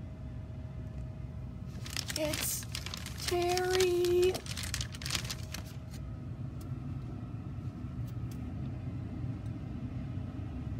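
Rustling and crinkling of plastic as toys are handled and rummaged in a plastic bag, busiest between about two and five seconds in, with a short held vocal note about a second long a little over three seconds in. A steady low hum sits under it all.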